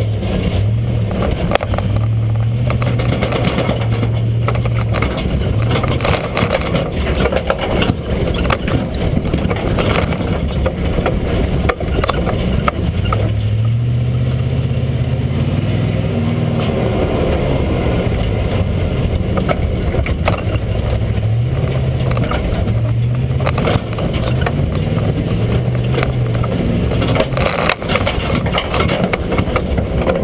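Truck driving, its engine rising and falling in speed under heavy road and chassis noise, picked up close by a camera mounted under the vehicle beside the rear suspension.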